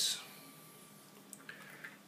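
Quiet room with a few faint, short clicks of handling in the second half, as a hand reaches down for a small Lego piece on a tiled floor.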